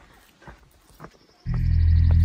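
Faint footsteps on a rocky trail, hard steps about twice a second. About three-quarters of the way through, music with sustained low tones comes in suddenly and is far louder than the steps.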